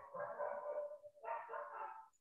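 A dog making two drawn-out vocal sounds, each about a second long with a short break between them, faint and muffled.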